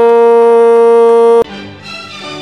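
A football narrator's long drawn-out "gol" cry, held loud on one steady pitch, cut off abruptly about a second and a half in. An orchestral theme jingle then starts, quieter.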